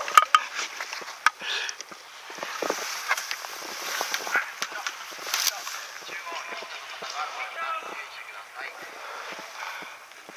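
Indistinct voices among irregular rustling and scattered sharp clicks and knocks, with no steady sound underneath.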